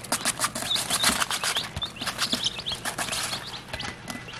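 Young chicks scratching and pecking in wood shavings and a tray of feed: a busy patter of small quick clicks and rustles, with short high peeps scattered through it.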